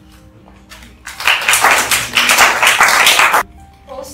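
Small audience applauding at the end of a poem reading, a dense burst of clapping that starts about a second in and stops abruptly after a little over two seconds.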